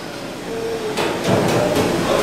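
Low room noise in a small performance venue, with a single sharp knock about halfway through and a faint low murmur after it.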